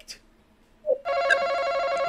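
Game-show buzz-in sound effect: a steady electronic ringing tone that starts about a second in and holds, signalling that a team has buzzed in first on the face-off question.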